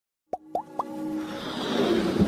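Electronic intro sting: three quick rising blips about a quarter second apart, then a swelling whoosh that builds toward the end.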